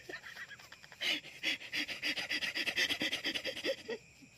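A man's stifled, breathy laughter: quick panting gasps, about four or five a second, that start about a second in and cut off abruptly.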